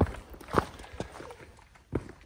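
Footsteps of a hiker on a bare rock trail: a few separate steps over faint outdoor background.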